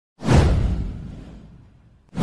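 Animated-intro sound effect: a single whoosh with a deep low boom under it. It swells in a moment after the start and fades away over about a second and a half.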